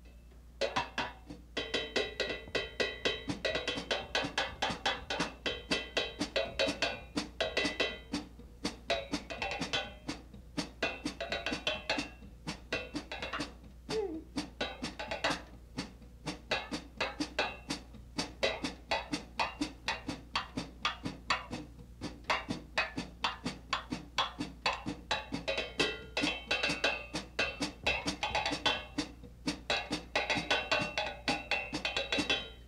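Melodic jazz drum-kit solo from a 1963 record. The drummer picks out the tune's melody on the drums with one hand while damping with the other, in a dense, steady run of strokes.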